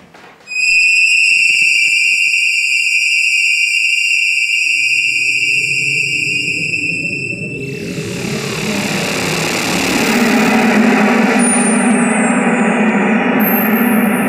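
Electronic computer music: a loud, steady high tone starts suddenly about half a second in. From about five seconds a low rumble builds beneath it, and from about eight seconds a dense, hissing wash of sound spreads over the whole range.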